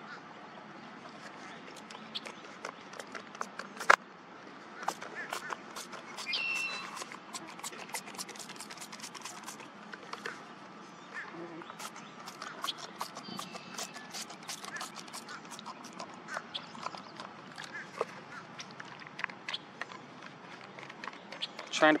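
Irregular clicks, taps and rustling of someone handling gear at close range: digging out and working a nearly empty bug spray bottle. One sharp louder click about four seconds in, and a short high-pitched call about six seconds in.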